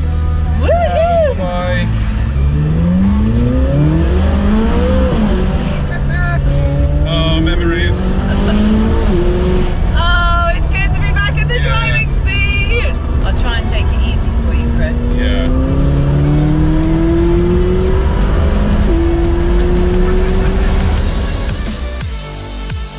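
McLaren 570S Spider's twin-turbocharged V8 accelerating, its pitch climbing in long sweeps that drop back at each gear change, with voices over it.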